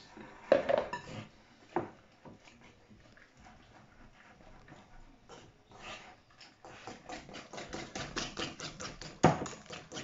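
Wire whisk beating batter in a glass mixing bowl, clicking against the sides in quick strokes that speed up to several a second in the second half, with a sharp knock near the end. Near the start, water is splashed in from a plastic jug.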